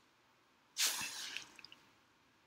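A short, hissy rush of breath-like noise at the microphone about a second in, followed by a few faint ticks.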